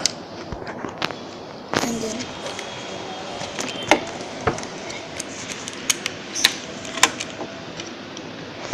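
Scattered small plastic clicks and handling sounds from a toy remote-control car as its charging-port cover is opened and the charger plugged in.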